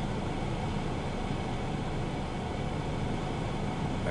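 Steady low rumble and hiss, even throughout, with no distinct events.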